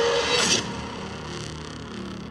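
Cinematic intro sound effect under a production-logo title card: a loud noisy whoosh, strongest at the start, that fades away over two seconds.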